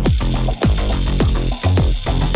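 Electronic background music with a steady kick-drum beat, about two beats a second.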